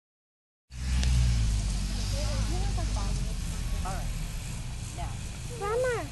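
Steady low rumble, strongest just after the sound begins, with quiet talking over it and a louder voice just before the end.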